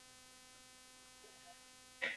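Near silence with a faint, steady electrical hum made of several even tones.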